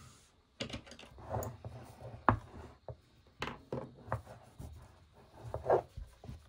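Handling of a crocheted T-shirt-yarn basket with an MDF base: the thick yarn and the board rub and scrape, with a few sharp knocks, the sharpest a little over two seconds in.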